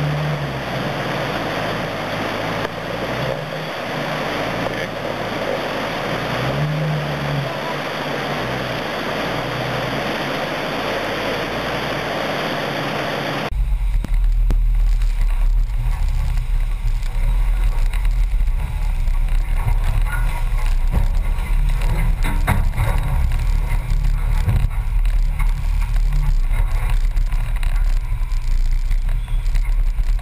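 Rushing creek water, with a Jeep Scrambler's engine revving twice as it fords. About 13 s in the sound changes to a steady deep rumble of the engine and water, heard through a hood-mounted GoPro.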